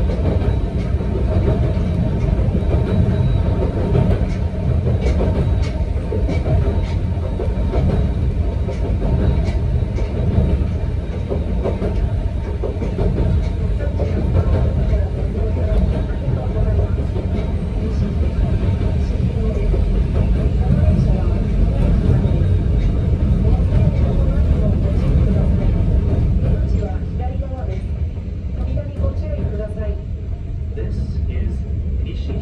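Cabin sound of a narrow-gauge Yokkaichi Asunarou Railway electric train running: a steady rumble of wheels on rail with scattered small clicks and rattles. Near the end it grows quieter and duller as the train slows.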